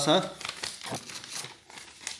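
A loose sheet of paper rustling and crinkling as it is moved and laid flat over a book page, in several short, irregular rustles.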